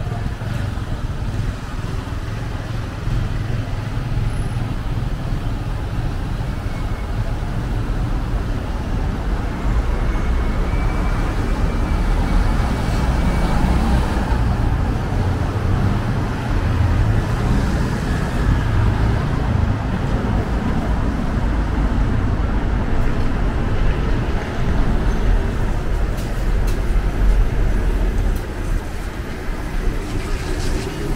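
Road traffic on a town street: cars and vans passing with a steady low rumble, swelling near the end as a bus comes alongside.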